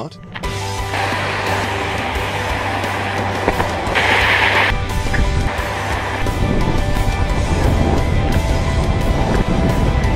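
Background music with steady held tones, over rough wind noise and rumble on the microphone of an outdoor camera. The rumble grows heavier in the second half, and there is a brief burst of hiss about four seconds in.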